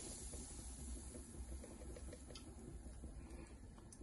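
Faint, steady bubbling of a stainless pot of pork broth at a rolling boil on the stove, as the red chile sauce goes in, with a few small ticks.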